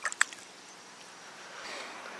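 Quiet river ambience, with a couple of short sharp ticks or drips just after the start.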